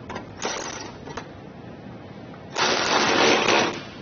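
Cordless power driver running a screw in a few short bursts, then a louder run of about a second near the end, driving home the screw that mounts the trailer-connector bracket.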